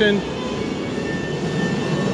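A steady low mechanical drone of machinery running on a building site, with a faint thin high whine about halfway through.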